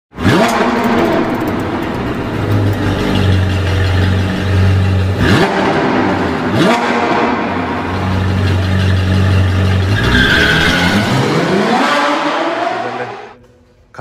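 A sports car engine revving hard as it accelerates, with quick upward sweeps in pitch partway through. A long rising rev comes in the last few seconds, and the sound then fades out.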